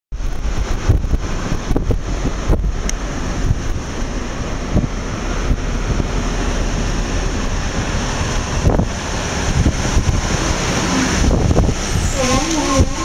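Wind buffeting the microphone from a moving vehicle, a steady rushing noise with irregular low gusts, over the vehicle's road noise.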